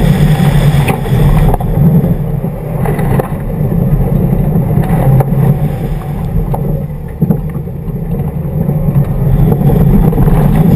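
2011 Subaru WRX's turbocharged flat-four engine running hard with tyres on loose gravel, a steady low drone that dips briefly twice, around three and seven seconds in, with a few sharp clicks.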